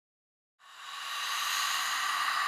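A hissing, static-like noise effect that cuts in suddenly about half a second in and swells quickly to a loud, steady hiss.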